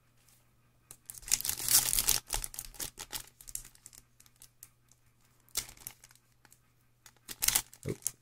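Foil trading-card pack wrapper crinkling and tearing in bursts as it is worked open by hand, with a lull in the middle; the wrapper is resisting being opened.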